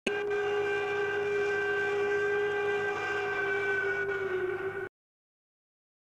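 A steam whistle blowing one long, steady, loud note that starts abruptly, dips slightly in pitch near the end and cuts off sharply just before five seconds.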